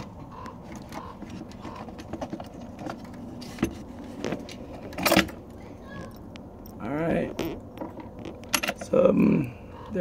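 Light metallic clicks and rattles of small fasteners being handled as the reverse cable end is unscrewed by hand from its bracket, with a sharper click about five seconds in.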